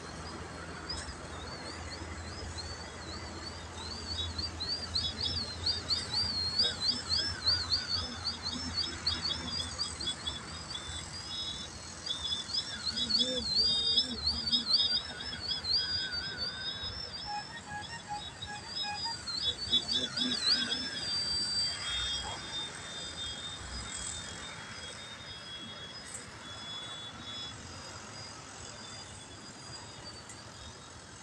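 Extra 3D aerobatic RC plane's motor whining, its pitch swooping up and down rapidly as the throttle is worked through low, nose-high manoeuvres. About two-thirds of the way in it settles to a steadier whine and fades as the plane climbs away.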